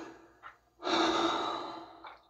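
A person breathing hard: a short breath, then a longer, louder breath about a second in that fades away.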